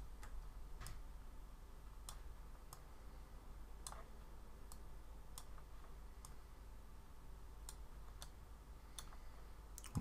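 Faint, irregular clicks of a computer mouse and keyboard, about a dozen, over a low steady hum.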